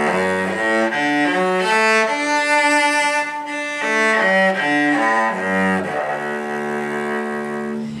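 Cello playing a two-octave D major arpeggio, bowed one note at a time: it climbs from the low D, holds the top note for about a second and a half, comes back down, and ends on a note held for about two seconds.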